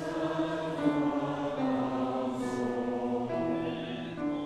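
Mixed choir singing held chords that change about every second, with grand piano accompaniment.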